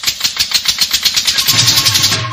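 Rapid drum roll in a DJ remix, the strikes quickening toward the end, with a low bass note coming in about one and a half seconds in.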